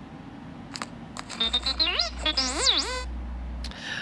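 Playful sound effects of a Star Wars AR sticker character, played through a phone speaker: warbling chirps whose pitch swoops up and down, mostly in the second half, after a couple of faint clicks.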